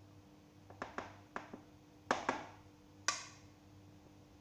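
Several sharp knocks and clacks of a plastic bowl being handled and knocked over a plastic container, uneven and a few per second, the loudest about two and three seconds in, over a faint steady hum.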